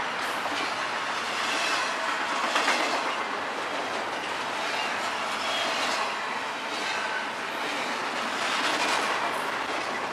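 Double-stack intermodal freight train rolling past: a steady, even noise of the container well cars' wheels on the rails, with scattered clicks as the wheels cross rail joints.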